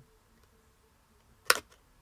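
Near-silent handling of folded card, with one sharp click about one and a half seconds in as a card box lid is worked into shape.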